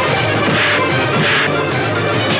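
Loud, continuous film background music with two crash-like hits, about half a second in and again about a second and a quarter in.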